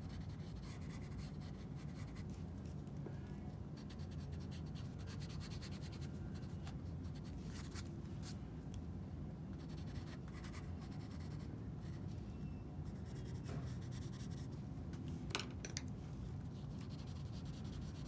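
Graphite pencil drawing on sketchbook paper: a run of short, irregular scratching strokes, over a steady low room hum.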